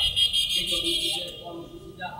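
A shrill, buzzing high-pitched sound that starts suddenly and stops after about a second and a quarter, over faint voices.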